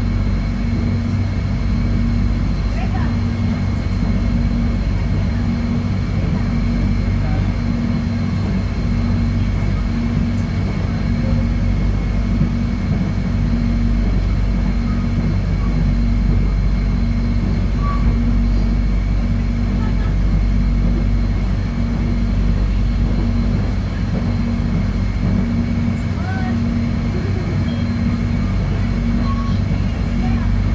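Cabin noise inside the Soekarno-Hatta airport line's electric train running at speed: a steady low rumble of wheels on the track, with a constant hum and a faint steady high whine.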